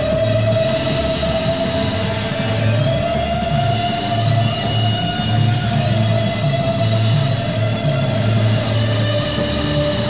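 Rock band playing live in a slow instrumental passage: a repeating low bass-guitar figure under one long held note that bends slowly up and back down.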